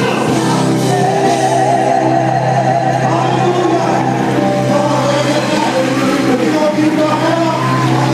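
Live gospel music: a male vocal group singing into microphones over a band with electric bass, the voices rising and falling over steady low held notes.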